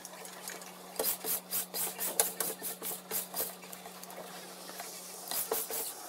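Lint roller rolled back and forth over clothes on an ironing board: quick rasping strokes about three a second, a pause of a second or so, then a few more strokes near the end.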